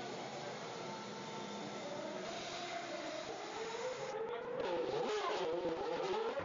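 Formula One car engines running at race speed, their pitch rising and falling as cars pass. The sound grows louder about four seconds in.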